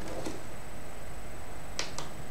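A single sharp click near the end, with a fainter tick just after the start, over a steady background hiss with a thin high whine.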